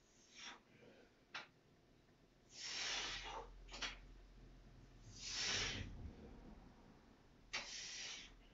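A man breathing hard through chin-ups: short sharp breaths, with two longer, forceful exhalations about three and five and a half seconds in.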